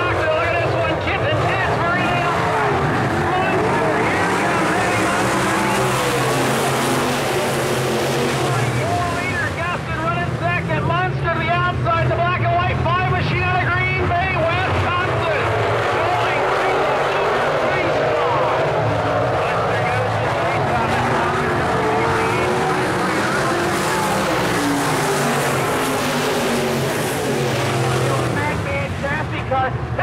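A pack of dirt-track modified race cars at racing speed. Their V8 engines rev up and down in overlapping waves as the cars pass through the turns and down the straights.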